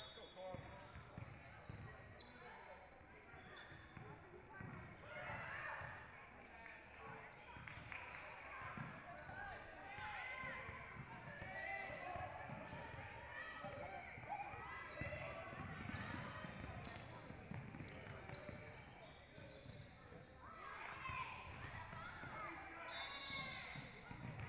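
A basketball being dribbled on a hardwood gym floor in live play, with repeated bounces, sneakers squeaking and indistinct players' voices in a large gym.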